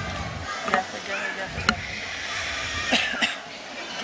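Indistinct voices of an auditorium audience, with a few scattered sharp claps as the applause trails off.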